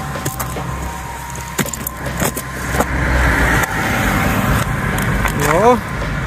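Clicks and knocks of a mud-caked metal cash box being handled and its lid worked open, over a steady low rumble of road traffic.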